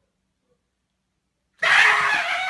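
Silence, then near the end a sudden loud scream from a person jumping out to startle a cat.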